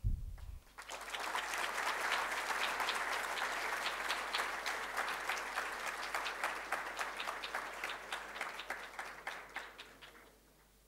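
A large audience applauding: dense clapping that builds about a second in, holds steady, then thins out and fades away near the end.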